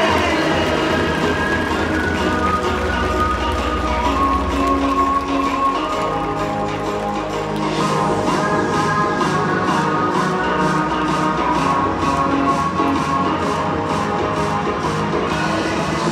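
Music played over a ballpark's public-address system in a large dome. A steady beat comes in about halfway through.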